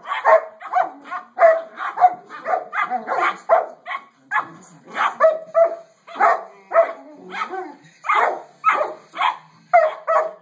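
Two dogs vocalizing back and forth at each other in a continuous run of short barking, grumbling calls, about two to three a second: excited play 'talk' between the dogs.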